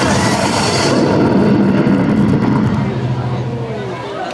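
Loud dance music cuts off abruptly about a second in, leaving the murmur of a large outdoor crowd over a steady low rumble that fades near the end.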